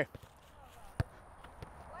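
A single sharp thud of a soccer ball struck by a foot on grass, about a second in.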